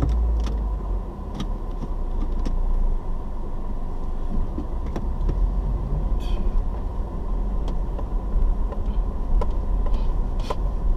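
Car heard from inside the cabin on a dirt road: a steady low engine-and-road rumble with scattered clicks and rattles over the rough surface. The rumble grows louder about halfway through as the car moves off.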